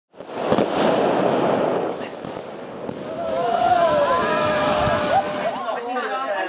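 Dense crackling with sharp pops for about two seconds, then several voices calling out over it in long, rising and falling tones.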